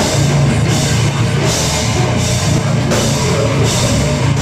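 A heavy rock band playing live: electric guitars and a drum kit, loud and continuous, with a cymbal wash recurring about every three-quarters of a second.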